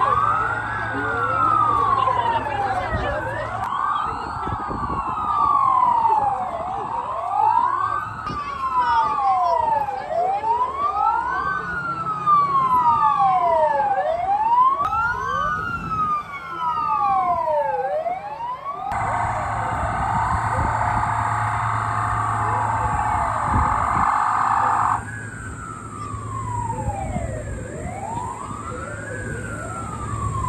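Fire-and-rescue vehicle sirens wailing, with several sweeps overlapping that rise and fall about every two seconds. A steady blaring tone sounds over them for about six seconds past the middle.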